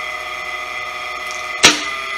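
Small 0.1 kW three-phase induction motor running on a single-phase supply through a capacitor, humming steadily in star connection. About a second and a half in, a single sharp contactor clack as the star-delta starter switches the motor over to delta.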